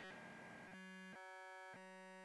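Near silence with a faint steady electrical buzz, as from an electric guitar amplifier switched on while the guitar is not being played.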